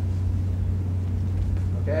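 A steady low hum fills the pause, with nothing else distinct above it.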